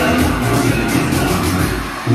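Loud dance music with a steady beat playing over the hall's loudspeakers.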